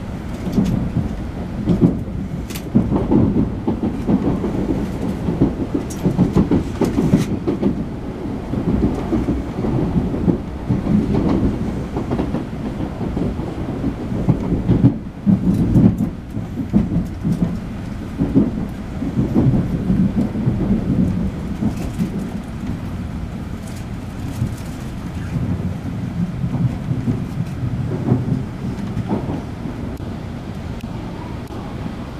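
Interior running noise of an N700-series Shinkansen train heard through the passenger-cabin window: a low, uneven rumble from the wheels and body, with a few sharp clacks from the track, as the train runs slowly into a station.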